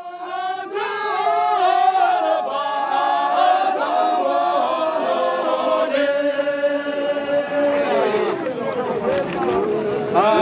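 A group of men singing a traditional song together in unison, unaccompanied, in long held notes that slide between pitches. The phrase falls away shortly before the end and a new one begins.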